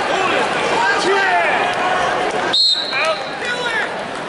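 Many spectators' voices shouting and talking at once, with a referee's whistle blown once, a short steady shrill tone about two and a half seconds in, stopping the wrestling.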